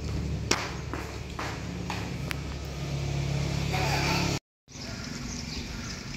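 Indoor room tone: a steady low hum with scattered light clicks and taps, and faint voices in the background toward the middle. It cuts off abruptly about four and a half seconds in, and a quieter outdoor ambience follows.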